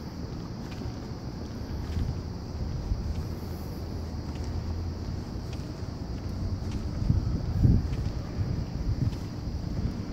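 Wind buffeting the microphone over a low outdoor rumble, with stronger gusts about seven to eight seconds in.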